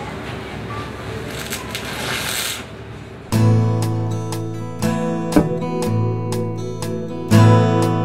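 A steady hiss of arc welding on stainless steel for about three seconds. Then strummed acoustic guitar music cuts in suddenly and much louder, with a regular strumming beat.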